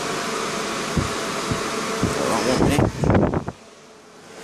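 Electric fan running steadily, with some knocks and handling noise near the end, then cutting off abruptly about three and a half seconds in as it is switched off.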